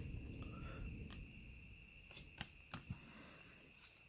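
Faint handling of trading cards: a few soft clicks and taps of card stock as a card is turned over in the hands, over a faint steady high-pitched tone.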